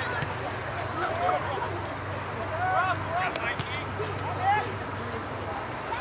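Indistinct, distant voices of people calling out around an outdoor soccer field, short scattered shouts with no clear words, over a steady low hum.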